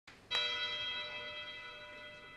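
A single bell toll at the start of the song's backing track: one strike about a third of a second in, ringing on and slowly fading.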